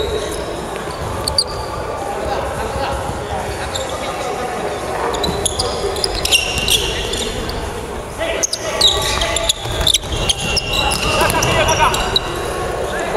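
A basketball bouncing on a wooden gym floor during play, with sneakers squeaking and players' voices in a large hall; the sharp knocks get louder and busier in the second half.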